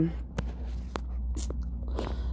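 Electric nail drill fitted with a sanding band, buffing an acrylic nail to smooth it: a steady low motor hum with faint gritty scratching and a few sharp clicks.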